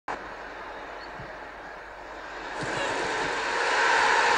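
Football stadium crowd noise, a steady hum that swells markedly louder from about two and a half seconds in as an attack closes in on goal.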